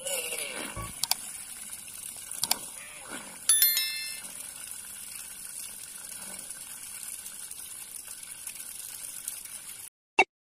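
Homemade submersible water pump, a 555 DC motor driving it from a PVC end cap, running and throwing out a jet of water, heard as a steady splashing hiss. A bright bell-like ding rings out about three and a half seconds in, and the sound stops abruptly at the end.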